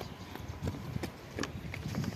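Footsteps, about three a second, over a low rumble.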